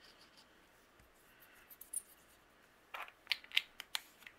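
Light scratching and rustling of paper and foam being handled as glue is applied, then a quick run of sharp clicks and taps near the end.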